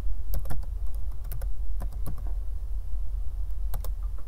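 Typing on a computer keyboard: about a dozen irregular keystrokes, mostly in the first two seconds, with a pause and then two more near the end. A steady low hum runs underneath.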